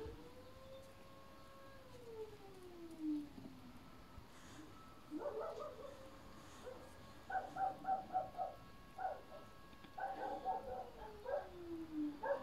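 A dog howling and whining faintly. One long note holds, then slides down in pitch. From about five seconds in come runs of short whimpering notes, and another falling whine near the end.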